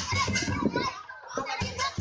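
Lion-dance drum and cymbals beating about four strokes a second, breaking off briefly about a second in, over the voices of a crowd with children among it.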